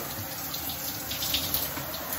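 Water running steadily in a bathroom, a continuous even hiss of spray or flow.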